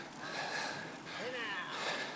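Steady rolling and wind noise of a moving bicycle ride, with a faint voice briefly a little past a second in.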